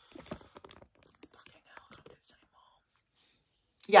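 Faint, scattered clicks and soft whisper-like sounds for about the first two seconds, then quiet, then a woman saying "yeah" right at the end.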